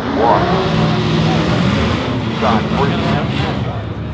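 A car engine running steadily, its pitch rising a little about two seconds in, with people's voices over it now and then.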